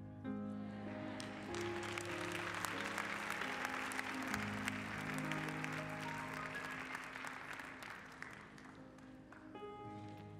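Congregation applauding over soft, sustained keyboard chords. The applause fades away near the end while the keyboard keeps playing.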